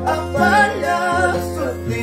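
Huayno played on an Andean harp, plucked bass notes and chords under a man's sung melody line that ends near the end.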